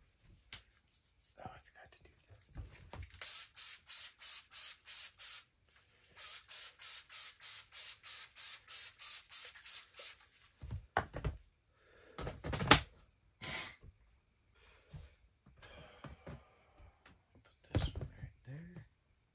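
Hand trigger spray bottle misting a mushroom substrate tray inside a plastic shoebox tub: a run of quick sprays, about three a second, a short pause, then a longer run. Hollow plastic knocks follow as the tub lid and boxes are handled, the loudest about two-thirds of the way in.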